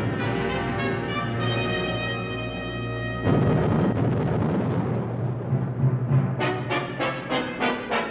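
Orchestral film score: a held chord of brass, then from about three seconds in a low, dense rumble. In the last two seconds it breaks into rapid repeated heavy strokes of drums and brass, about four a second.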